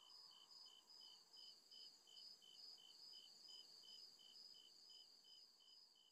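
Faint, evenly repeating high-pitched chirping of crickets, about two to three chirps a second, dying away shortly before the end.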